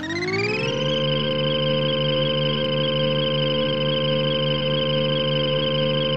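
Benchtop table saw's motor finishing its spin-up with a rising whine, then running at full speed with a steady, high whine.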